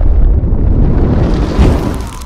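Heavy, loud explosion-and-fire sound effect for an animated logo intro, with a deep low rumble throughout. A rising whoosh swells to a hit about a second and a half in, and the sound begins to die away near the end.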